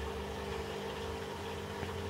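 Steady low hum made of a few fixed tones over a faint even hiss, unchanging throughout.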